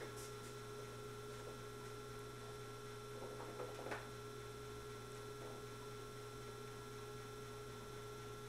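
Faint steady electrical hum, with a brief soft sound about four seconds in.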